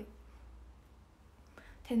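A woman's speech: a word ending at the start, a pause with faint room noise and a soft breath, then her voice again near the end.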